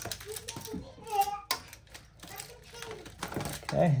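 Plastic wiring connectors and wires on an electric dirt bike being handled and unplugged by hand: a string of small clicks and rattles.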